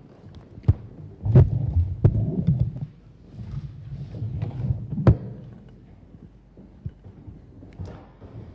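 Microphone handling noise: low rubbing rumbles and several sharp knocks as a microphone is picked up and set in place, the loudest knocks about a second and a half in and again about five seconds in.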